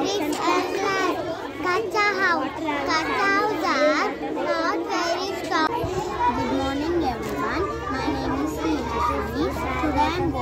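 Children's voices: lively, high-pitched child chatter and talking. About six seconds in, the sound cuts to a child talking over a steady low hum.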